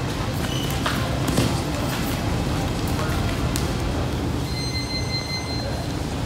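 Live grappling-gym ambience: steady room noise with scattered thumps and scuffles of bodies on the mats and voices in the room. A high steady tone sounds for about a second and a half near the end.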